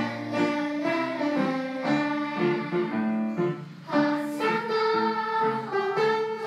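Children's choir singing a song in Cantonese in held, pitched phrases, with a brief drop just before four seconds in as one phrase ends and the next begins.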